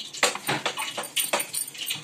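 Wooden rolling pin working a sheet of dough on a wooden rolling board, a quick run of short scraping, knocking strokes.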